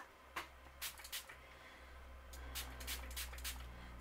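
A hand-pump spray bottle misting water in several short spritzes, a few in the first second and a quicker run in the second half, over a faint low hum.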